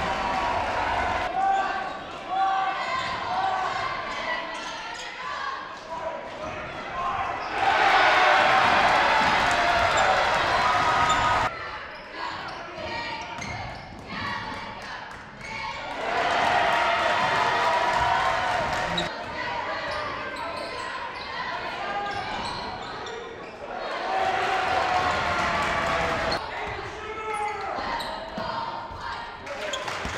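Gym game sound of a basketball game: a ball bouncing on a hardwood court, sneakers, and players' and spectators' voices in a large echoing hall. The sound jumps abruptly between short segments, with louder stretches of crowd voices.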